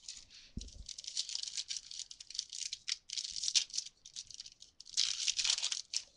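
Trading-card pack wrapper being torn open and crumpled by hand: several crinkling, rustling spells of a second or so each, with a soft knock just after the start.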